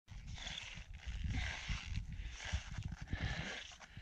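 A climber breathing hard at high altitude: hissy breaths in a steady rhythm of about one a second, with low thumps of wind and movement on the microphone.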